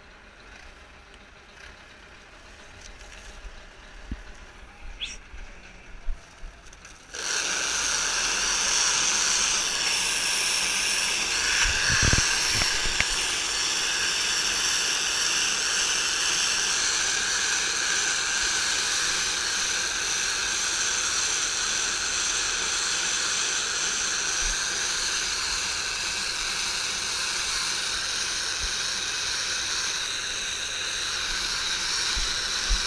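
A round bale wrapper driven by the tractor starts up suddenly about seven seconds in and then runs with a loud, steady, even noise as it wraps a hay bale in stretch film. Before it starts there are only a few small knocks of the film being handled, and there is one low thump about twelve seconds in.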